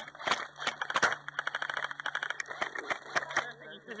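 A string of irregular sharp clicks and cracks, several a second, thinning out near the end, typical of airsoft guns firing across the field.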